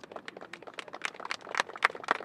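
A small group of people clapping, quick sharp claps about eight a second, getting louder toward the end.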